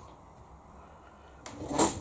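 Quiet room tone, then about one and a half seconds in a brief scratchy swish from a watercolour brush loaded with green paint working against the palette and the paper.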